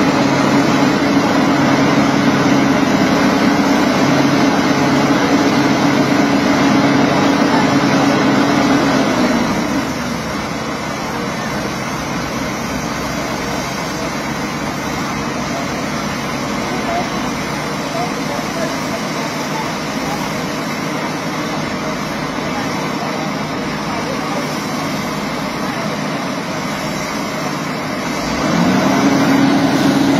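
Heavy diesel engine running hard under load with a steady droning tone. It drops back to a lower, rougher level about ten seconds in and picks up again near the end.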